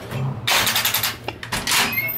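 A door being opened and gone through: a rattling scrape about half a second in that lasts about half a second, then a shorter one near the end.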